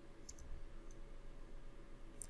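Faint computer mouse clicks: a quick pair a little after the start and a softer single click about a second in, over a low steady hum.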